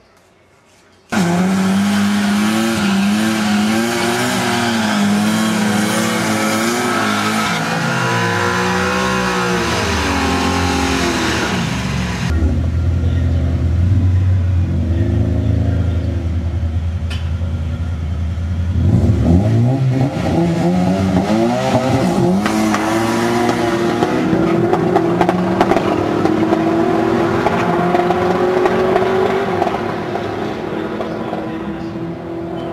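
Turbocharged drag car engine revving hard and unevenly during a burnout, then holding a steady low drone. About two-thirds of the way in it launches, and the engine note climbs with drops at the gear changes as the car runs off down the strip.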